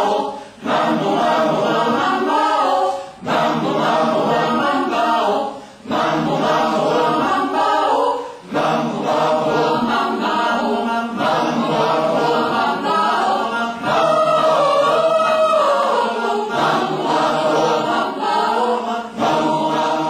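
Mixed choir of men's and women's voices singing a cappella in parts. The first eight seconds come in short phrases with brief breaks between them, then the singing is held without a pause.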